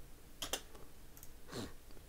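Faint computer mouse clicks: two close together about half a second in, then a few softer ticks, with a brief soft swish a little after a second and a half.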